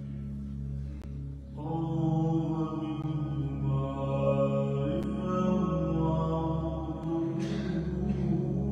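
A man's voice singing a slow, wordless chant-like melody in long held notes with vibrato, coming in about a second and a half in, over a steady low drone. A short breathy hiss comes near the end.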